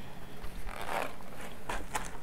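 Plastic food packs rustling and scraping as they are handled and slid across a table, a rough noisy rasp about half a second in and a shorter one with a click near the end.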